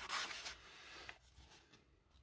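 Paper pages of a small magazine rustling as they are flipped by hand, loudest in the first half second and fading to a faint rustle by about a second in.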